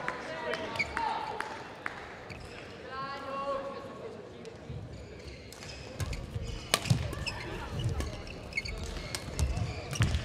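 Badminton rally: sharp cracks of rackets striking the shuttlecock and heavy thuds of players' feet on the court. Before the rally starts, past the middle, voices carry in the hall.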